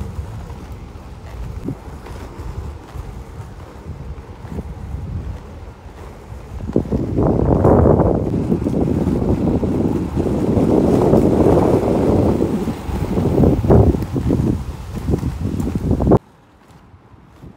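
Skateboard wheels rolling over a rough tarmac path, with wind buffeting the microphone. The rumble grows louder and coarser from about seven seconds in.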